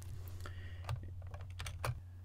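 Computer keyboard keystrokes: several quick, light clicks in the second half, over a faint steady low hum.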